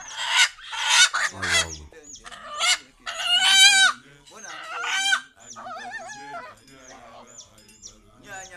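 A rooster squawking repeatedly as it is held and handled: a string of loud, harsh calls, the longest and loudest about three seconds in, then quieter calls in the last few seconds.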